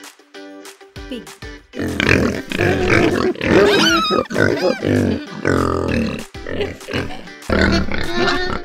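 Pigs grunting and squealing over light background music. The calls turn loud from about two seconds in, with high rising and falling squeals around the middle and another loud burst near the end.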